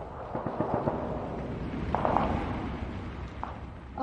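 Gunfire and explosions of an armed clash: a rapid crackle of shots over a low rumble, busiest about halfway through.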